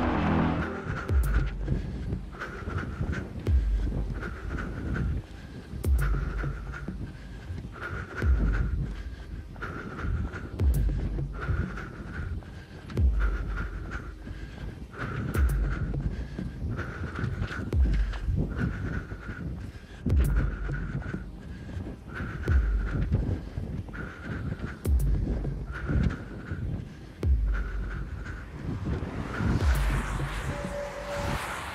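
A runner's rhythmic heavy breathing close to a head-mounted camera mic, one breath about every second and a half, over the patter of running footsteps on a paved path.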